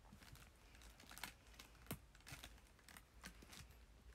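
Faint, scattered small clicks and snaps of teeth nibbling a thin chocolate piece, irregular, the sharpest about a second and two seconds in.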